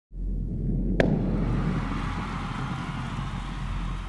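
Intro-title sound effect: a sharp hit about a second in, then a sustained low rumble.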